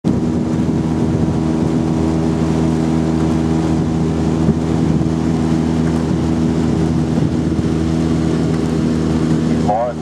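Outboard motor of a coaching launch running at a steady cruising speed, a constant even drone with no change in pitch, as it follows the rowing shells.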